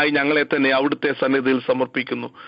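Speech: a man praying aloud in Malayalam, heard over a telephone line that makes his voice sound narrow and thin.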